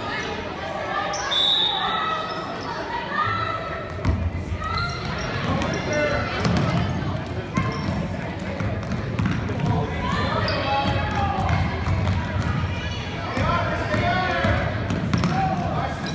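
A basketball being dribbled on a hardwood gym floor, its bounces thudding under indistinct voices and shouts from players and spectators that echo around the gymnasium. The bouncing is most frequent from about four seconds in.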